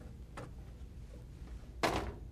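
Front cover of an OKI LE810 label printer being opened: a faint tap, then a short sharp snap near the end as the cover comes free.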